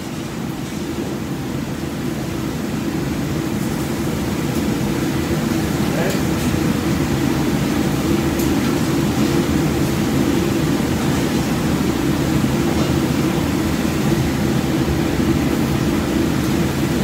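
Steady low rumble of a restaurant kitchen's exhaust hood fan over the range and griddle, with a few faint clicks of utensils.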